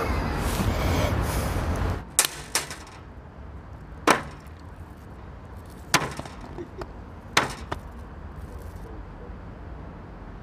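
Rubidium metal reacting with water: a handful of sharp pops and cracks, irregularly spaced over several seconds. A loud rushing noise comes before them and cuts off abruptly about two seconds in.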